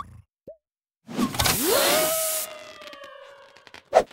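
Cartoon balloon-inflating sound effect: a short plop, then a loud rush of air with a squeaky tone that sweeps up and then holds as it fades, ending in a sharp click.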